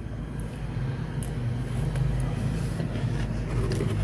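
Freezer running with a steady low hum, with a few faint light clicks over it.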